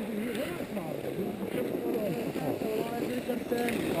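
Faint, indistinct voices of skiers talking over a light hiss, with a short click about three and a half seconds in.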